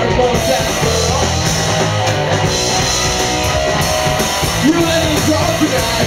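Live rock band playing loudly on electric guitars, bass and drums, with a male singer singing into a microphone.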